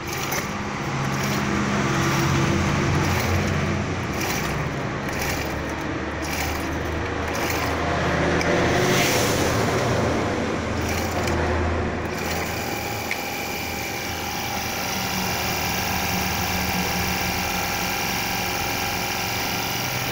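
Honda GX25 25 cc four-stroke engine on a Husqvarna T300RH cultivator running, its speed wavering over the first dozen seconds, then settling into a steady idle.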